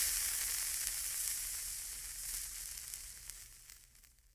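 Sizzling, burning-spark sound effect with small crackles, fading away steadily over about four seconds.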